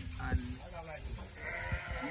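A sheep bleating, one drawn-out call starting about a second and a half in.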